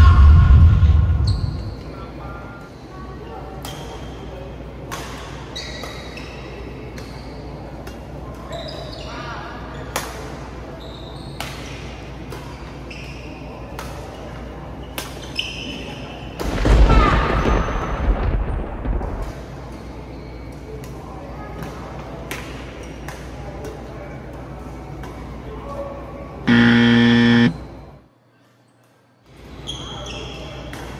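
Badminton rally: sharp racket-on-shuttlecock hits and short shoe squeaks on the court floor, with a loud burst of noise about two-thirds through. Near the end a buzzer tone sounds for about a second, then the sound cuts out briefly.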